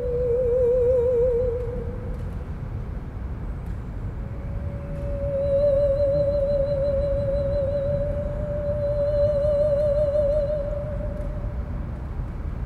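Musical saw playing long, wavering notes with a wide vibrato. The first note slides a little lower and fades about two seconds in. A second, longer note is held from about four seconds in to near the end, over a steady low rumble.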